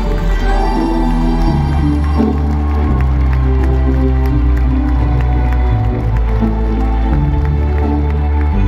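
Live pop band playing slow, held closing chords over a deep bass line through the concert PA, with an arena crowd cheering underneath.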